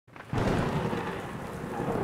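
Thunderstorm sound effect: thunder breaking out suddenly about a third of a second in and rumbling on over a steady hiss of rain.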